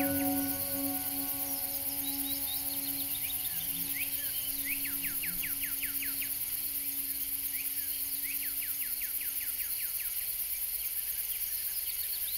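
A songbird repeating a fast trill of short falling notes, a run of about ten notes every few seconds, with a steady high insect-like hiss behind it. A long held low music note sounds under it and fades out near the end.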